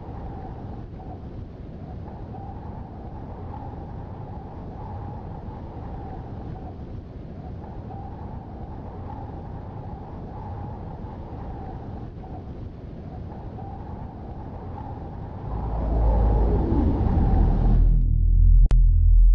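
A low, steady rumbling drone with a wavering higher tone over it. Near the end it swells into a deep, loud bass with a falling sweep.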